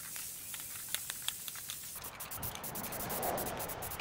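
Aerosol spray paint can hissing as paint is sprayed onto steel tubing, under quiet background music.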